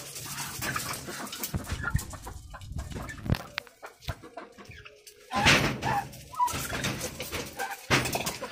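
Penned domestic fowl, turkeys among ducks, clucking and calling in short irregular bursts with scuffling, and a loud noisy burst about five and a half seconds in.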